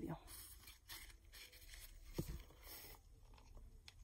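Faint rustling and a few light taps of hands handling ribbon bows and craft pieces on a table.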